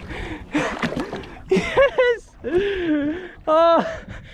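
A man's excited wordless vocalising: breathy gasps and laughing exclamations, ending in a short, high-pitched whoop.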